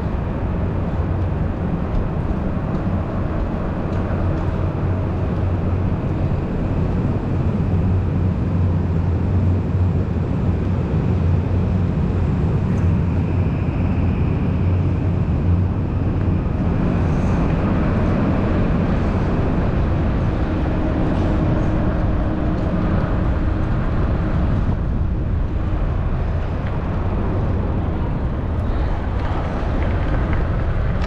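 Steady rumble of wind and road noise from riding along city streets, heaviest in the low end, with traffic around.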